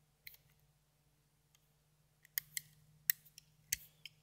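A few faint, sharp clicks from a plastic Rainbow Loom and its hook being handled as rubber bands are worked on the pegs, most of them in the second half.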